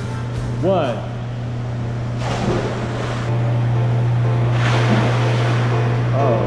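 Water splashing as a child jumps into a swimming pool, a rush of water about two seconds in and another near the fifth second. This comes over background music with a singing voice and a steady low hum.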